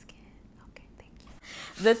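Quiet, breathy, whisper-like sounds from a woman with a few faint clicks, then a breath and the first word of her speaking voice at the very end.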